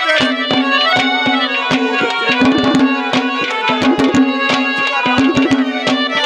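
Instrumental interlude of Haryanvi ragni folk music: a harmonium holds a steady reedy melody while hand drums play fast, dense strokes.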